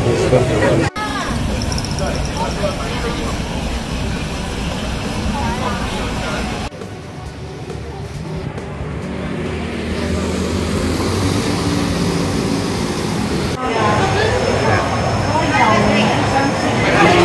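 Busy street and market ambience in short clips joined by hard cuts: a mix of crowd chatter, with traffic going by in the middle clip.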